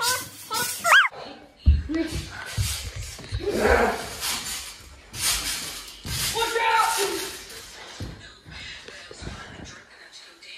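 Children's voices shouting and laughing, with a rising whoop about a second in. Several dull low thumps of bodies landing and bouncing on a large trampoline mat fall among the voices.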